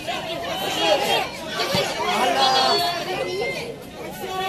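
Several voices calling out and chattering over one another during a football match, with one short low thud about halfway through.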